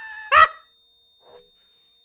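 A man's sudden loud laugh, ending in one short explosive burst about half a second in, close on the microphone.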